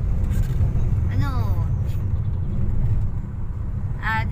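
Steady low rumble of a car's engine and road noise heard inside the cabin while the car is being driven, with a brief voice sound about a second in.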